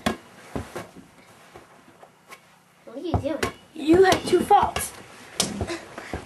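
A sharp knock, then a couple of lighter knocks within the first second; from about three seconds in, kids' excited voices and shouts without clear words.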